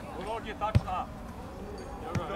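A football kicked once, a single sharp thud about three quarters of a second in.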